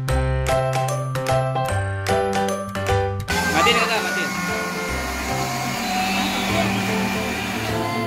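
Cheerful children's background music with chiming notes. A little past three seconds in, a steady whirring noise starts under the music and keeps on: an electric countertop blender running.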